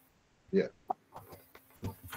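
Brief speech over a video call: a short 'yeah', then a few clipped, choppy voice fragments.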